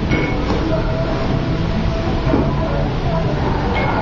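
Steady low rumbling background noise with a few faint steady hums, even throughout.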